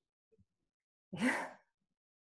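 A woman's single short, breathy laugh, close to a sigh, about a second in after near silence.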